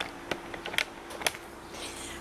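Handling noise: a few light clicks and taps in the first second or so, then only faint room background.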